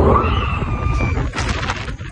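Heavy low rumble of wind buffeting the phone's microphone as a launch tower ride shoots riders up. A short rising scream comes at the start, with faint high screams and a few knocks after it.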